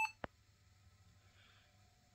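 The end of a laptop's power-on beep, cut off at the very start, then a single short click about a quarter second in, followed by near silence with a faint low hum.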